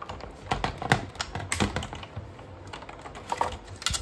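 Sizzix Big Shot die-cutting machine being hand-cranked, the magnetic platform and cutting plates rolling through it with a run of irregular clicks and knocks.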